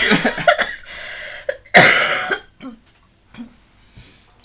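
Laughter trailing off, then one loud, harsh cough about two seconds in, followed by a couple of faint breathy sounds.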